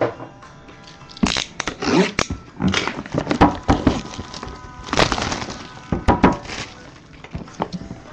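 Plastic shrink wrap being torn and crumpled off a sealed box of hockey cards, in several bursts of crackling rips.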